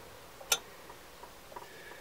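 A single sharp click about half a second in, then a few faint light ticks, as loose cut patch pieces are shifted by hand on the van's metal floor.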